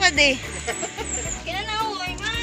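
A singing voice in a background song, its pitch wavering and gliding; one sung phrase ends just after the start and another begins near the end.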